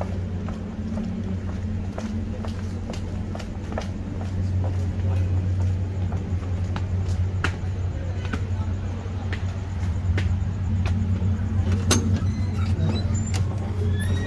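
A steady, loud low mechanical hum, with scattered short clicks from footsteps.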